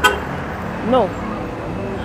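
Steady low rumble of road traffic passing close by.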